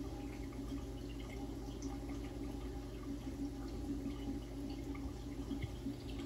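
Saltwater reef aquarium running: faint water trickling and dripping over a steady low hum.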